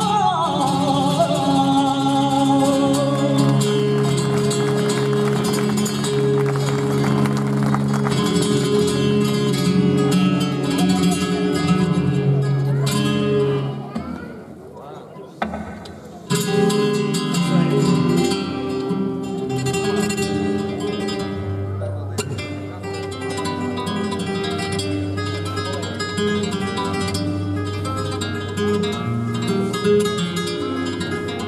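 A flamenco singer finishes a fandango phrase over Spanish guitar accompaniment, and then the flamenco guitar plays on alone with plucked notes and strummed chords. About halfway through the guitar drops to a brief quiet passage, then picks up again.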